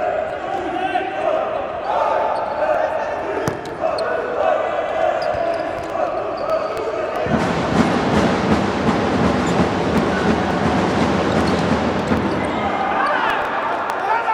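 Futsal ball being kicked and bouncing on an indoor court, with shouting voices in a reverberant hall. About seven seconds in, a louder, even wash of crowd noise rises and holds for several seconds.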